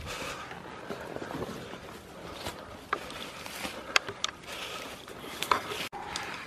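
Someone walking through forest undergrowth: a low rustle of ferns and leaves, broken by a few short sharp snaps or clicks.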